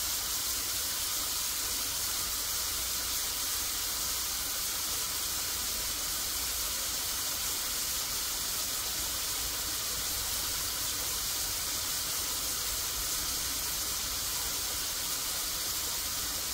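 Small peeled shrimp frying in hot oil in a metal pot, a steady sizzle as the shrimp cook out their water.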